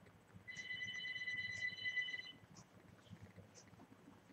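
A telephone ringing once: a steady electronic ring about two seconds long, starting about half a second in.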